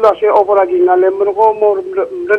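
Only speech: a man talking without a break.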